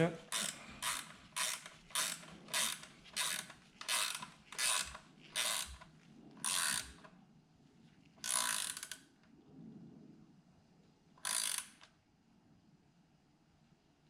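Hand ratchet clicking in short strokes, about two a second, as an exhaust clamp bolt is tightened down, then slowing to three longer, spaced strokes as the bolt gets snug.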